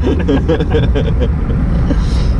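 Open-top car driving with the roof down: a steady low engine and road rumble heard from inside the open cabin, with laughter over it in the first second or so.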